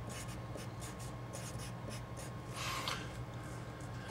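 Felt-tip Sharpie marker writing on paper: a run of short faint strokes, then a longer scratchy stroke about two and a half seconds in.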